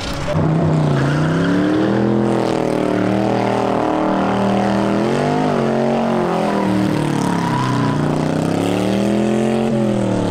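Hot rod roadster's engine revving up and down during a burnout, its pitch climbing and dropping several times. Only one rear tyre spins, because the car has no locked rear axle.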